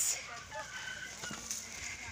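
Faint chicken calls in the background, with a short call about a second in.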